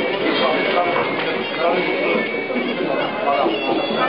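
Crowd of spectators shouting and calling out over one another, many voices at once at a steady, fairly loud level.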